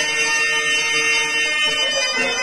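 A male singer holds one long, steady note of a Telugu drama padyam, with harmonium reeds sustaining beneath the voice.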